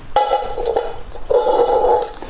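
A metal can scraping and ringing against a concrete floor, in two scraping passes with a steady metallic ring.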